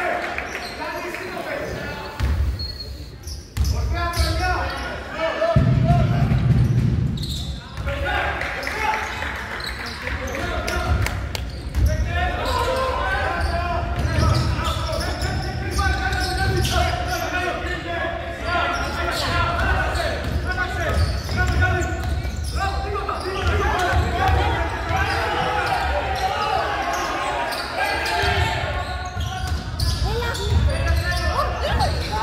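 A basketball bouncing on a gym's wooden court among the shouting voices of players and spectators. A low rumble lasts about two seconds, some six seconds in.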